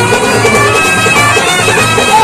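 Live folk band music for a kolatam stick dance: a reed-like wind instrument holds a sustained melody over a fast, steady drum beat.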